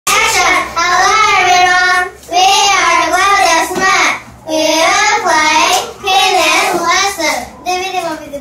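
Young girls singing a song together, in four held phrases with short breaks between them.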